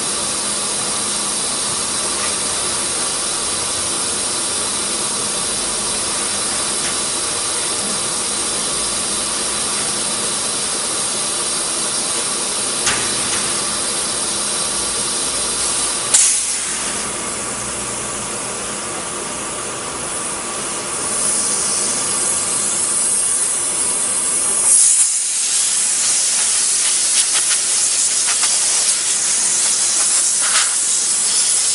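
Compressed air hissing steadily from an air-hose nozzle as it blows sawdust off a CNC router table. The hiss grows louder and grittier in the last few seconds as the dust is blasted clear.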